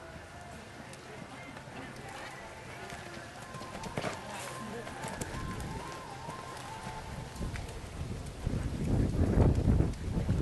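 Outdoor arena ambience with indistinct distant voices, then wind buffeting the microphone in gusts that build over the second half and are loudest near the end.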